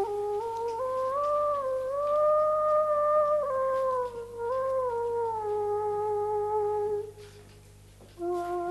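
Background music: a solo flute-like wind instrument plays a slow melody of long held notes that slide from one to the next, and stops about seven seconds in.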